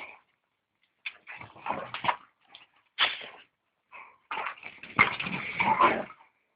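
Two dogs play-fighting, their noises coming in short, irregular bursts, with the loudest and busiest stretch near the end.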